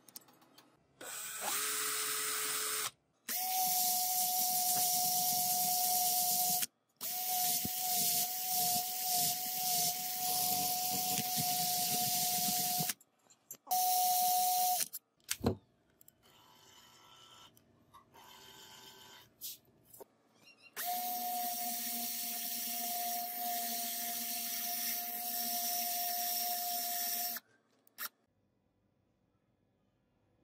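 Cordless drill motor whining steadily as it spins a small brass lighter part in its chuck, while a flat file scrapes against the turning brass. The drill starts and stops about five times, the first run lower in pitch, with a quieter stretch of faint filing in the middle.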